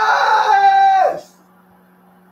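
A man's long, held scream of celebration, high and steady, dropping a little in pitch before it breaks off about a second in. After that, quiet with a faint steady hum.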